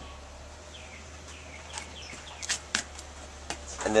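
Quiet outdoor background: a steady low hum, a few faint bird chirps in the first half, and several light clicks in the second half.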